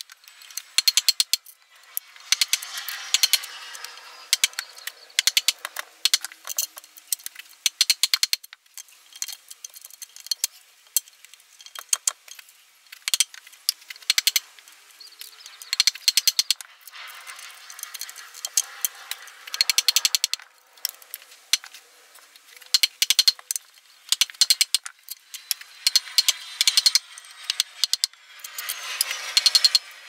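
Wooden mallet driving a chisel into a fresh-cut green log, hollowing out a recess. The knocks come in bursts of rapid strikes with short pauses between.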